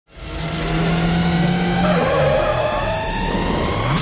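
An off-road jeep's engine, as heard in a film soundtrack: it runs steadily and then revs, its pitch rising sharply just before the cut.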